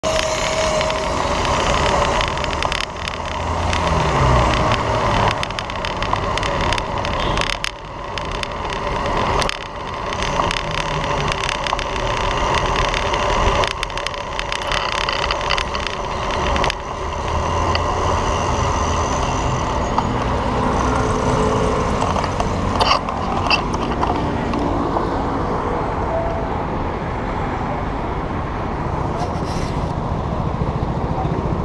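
City road traffic: cars and a bus running in the lanes alongside, over steady noise from riding along the bike lane.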